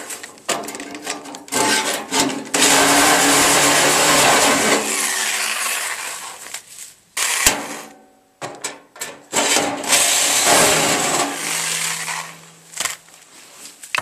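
Reciprocating saw cutting the sheet steel of a steel drum to free the corners of a door: a few short bursts, then two longer cuts separated by a pause with a sharp knock about halfway through.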